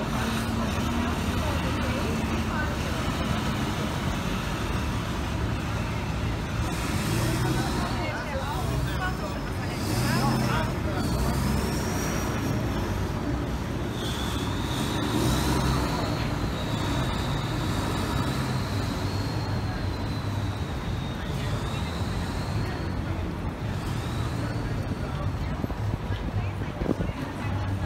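Busy city street ambience: a steady rumble of road traffic with passers-by talking. Through the middle a faint, high, wavering tone drifts in and out above the noise.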